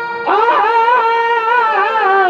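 Chhau dance music played over loudspeakers: a wind instrument of the shehnai type holding long melody notes with pitch bends and ornaments. One note ends and a new phrase begins with an upward slide about a quarter second in.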